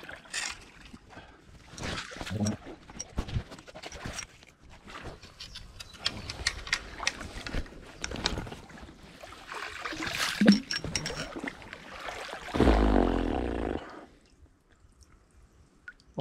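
A landing net sweeping through shallow river water, with irregular splashes and knocks against the stones on the bottom. Near the end comes a drawn-out low vocal groan.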